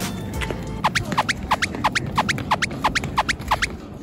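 A cartoon-style sound effect: a run of about a dozen quick falling chirps, around four a second, starting about a second in and stopping shortly before the end.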